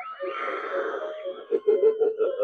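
Talking Ice Scream Clown animatronic playing its recorded spooky voice track: a long, breathy, drawn-out vocal sound, then choppier voice sounds over steady held tones.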